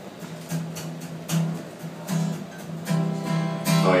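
Acoustic guitar with one low string plucked over and over at the same pitch, mixed with a few other plucked notes, as the guitar's tuning is checked.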